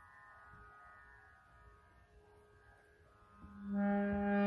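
Harmonium reeds sounding: a faint steady held tone, then about three and a half seconds in a louder low note is pressed and swells.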